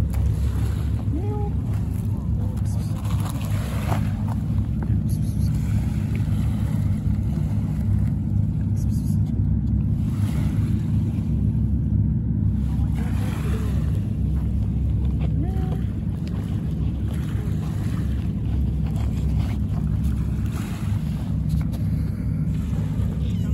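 A steady, low engine drone that holds an even pitch, with no change in speed.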